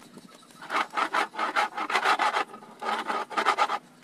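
Metal rasping in a quick series of short scraping strokes, in two runs with a brief pause between them.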